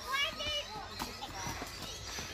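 Children's voices in the background: a few short high calls near the start, then faint chatter.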